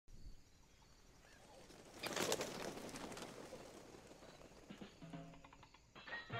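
A brief flutter of bird wings, about a second long, around two seconds in, over a faint outdoor background; faint music begins near the end.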